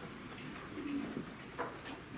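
Faint room noise of a waiting concert audience in a hall, with a short low hum-like sound about a second in and a few soft clicks.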